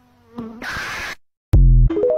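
A bee's buzz, about half a second long and cut off abruptly, in a meme edit. About a second and a half in, TikTok's end-card sound follows: a very loud deep bass note, then a few short higher tones stepping upward.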